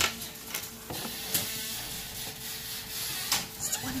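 Food frying in a pan: a steady sizzling hiss under a faint steady hum, with a few sharp clicks about a second in and again near the end.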